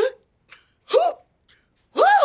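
A person's voice making short, sharp vocal outbursts, each rising and falling in pitch, about one a second.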